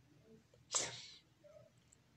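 One short, sharp breath from the man, about three quarters of a second in, fading within half a second, in a pause in his speech.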